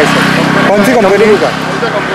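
A vehicle engine idling with a steady low hum, with a voice speaking briefly over it in the middle.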